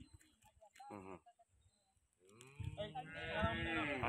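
A cow mooing: one long, loud call that begins a little past halfway, after a mostly quiet start.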